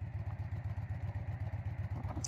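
Harley-Davidson V-twin engine running steadily under way, a low, evenly pulsing rumble.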